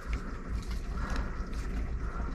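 Handling noise from a carbon-fibre mini tripod being turned in the hands: a few faint clicks and rubbing, over a steady low hum.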